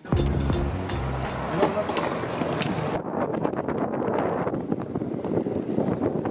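Steady road and tyre noise of a car driving, heard from inside the car, with music faintly underneath. The sound changes abruptly about three seconds in, as at an edit.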